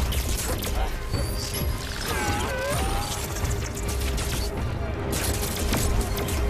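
Sci-fi action film soundtrack: score music under repeated energy-weapon blasts and impacts, over a constant low rumble.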